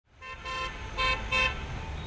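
A vehicle horn tooting three times, one longer blast followed by two short ones, over the low, steady rumble of street traffic.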